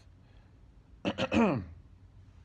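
A man clears his throat once, about a second in: a short rasp followed by a vocal sound that slides down in pitch.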